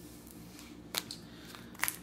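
Light clicks of plastic-bagged comic books being pushed back into a tightly packed cardboard longbox, over quiet room tone: one click about a second in, two more just before the end.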